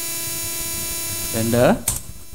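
A steady hiss with an electrical hum underneath, the hum made of several thin steady tones. A short vocal sound comes about one and a half seconds in.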